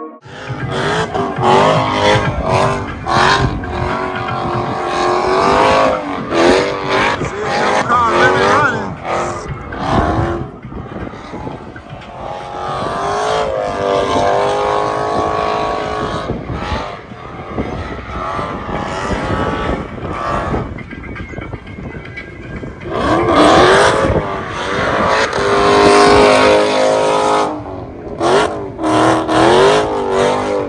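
A car doing a burnout: its engine is revved hard again and again, the pitch rising and falling, while the rear tyres spin on the pavement. The loudest stretches come a few seconds in and again over the last several seconds.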